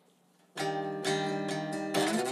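Steel-string acoustic guitar strummed, the opening chords of a song, starting about half a second in after near silence. Several strums follow, about three a second, each chord ringing on.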